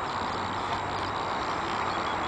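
2003 Triumph Bonneville America's air-cooled parallel-twin engine idling steadily.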